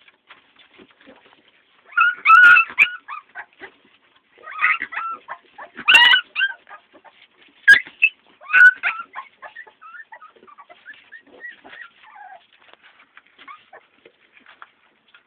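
A dog whimpering and yipping: a string of high-pitched cries, loudest in bursts between about two and nine seconds in, then fainter whines.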